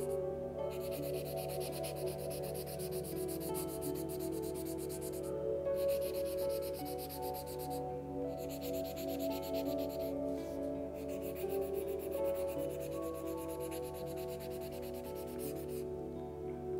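Graphite sketching pencil scribbled rapidly back and forth over the back of a printed sheet of paper, coating it with graphite for tracing, with short pauses about a third, half and two-thirds of the way through. Soft background music with sustained tones plays underneath.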